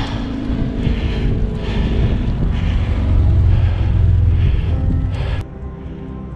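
Wind buffeting a small camera microphone on a moving road bike, a loud low rumble, over background music. About five and a half seconds in, the wind noise stops abruptly and only the music remains.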